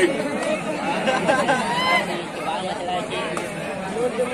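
Crowd of spectators chattering, many voices talking and calling out over one another at a steady level.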